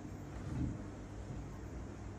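Faint low background rumble and hiss: room tone, with no distinct event.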